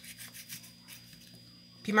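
A small knife slicing through a red chili pepper held in the hand: a few faint scraping cuts.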